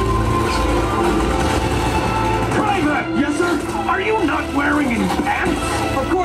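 Soundtrack of an animated battle scene: rifle gunfire and a steady low rumble under music, with voices shouting from about halfway in.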